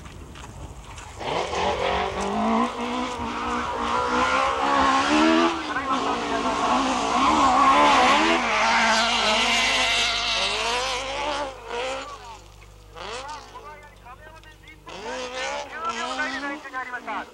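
A modified dirt-trial car's engine revving hard as it races along a gravel course, its pitch rising and falling with the throttle and gear changes. It grows loud about a second in and fades away after about eleven seconds.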